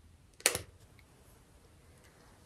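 A single sharp click with a short rattle about half a second in, from handling a plastic long-reach utility lighter, then a faint tick.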